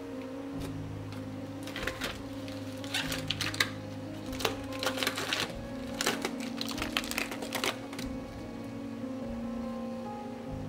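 Solo acoustic guitar background music, with a run of small clicks and taps from about two to eight seconds in.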